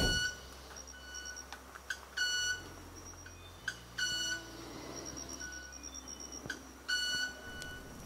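Male club-winged manakin making its wing sound during its courtship display: it rubs specialized ridged wing feathers together to produce high-pitched, metallic, violin-like notes. Short ticks alternate with longer ringing tones a quarter second or so long at irregular intervals; the loudest are about two and a half and four seconds in.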